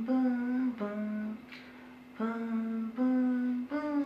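A man humming a slow melody in long held notes, each a little under a second, with a short pause near the middle.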